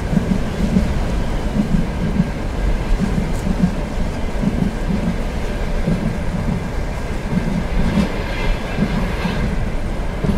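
Inside a passenger train carriage: the steady low rumble of the train with a regular clickety-clack of wheels over rail joints, under a soft hiss of rain. Near the end comes a short, higher rattle.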